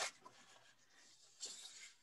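Near silence, broken by a faint, brief rustle about one and a half seconds in.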